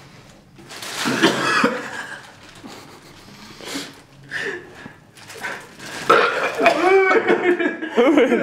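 A man retching and gagging into a plastic bag: several separate throaty heaves with belch-like sounds, the loudest and longest run near the end.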